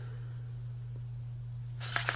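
A steady low hum throughout, with a brief rustle of a layered cardboard playing-card tuck case being folded shut near the end.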